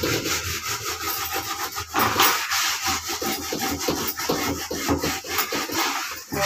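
Hand scrubbing the inside of a plastic paint bucket, with rapid, repeated back-and-forth scraping strokes as dried paint residue is scoured off the walls.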